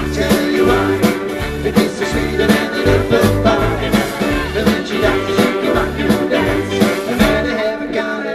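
A live rock and roll band playing with a steady beat: an upright double bass walking in regular low notes under electric guitar and drums.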